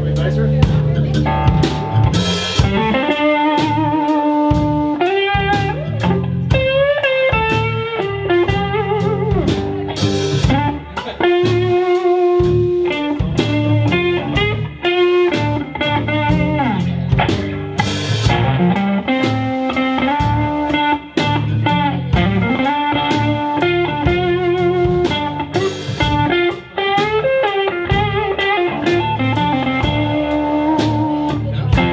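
Live blues band playing an instrumental break: a drum kit keeps a steady beat under guitars, and a lead line of bent, wavering notes runs over the top.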